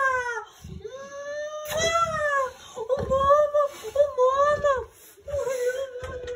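A Boerboel whining and howling in a series of about five long cries, each rising and then falling in pitch, the last held steadier. It is greeting its owner on her return.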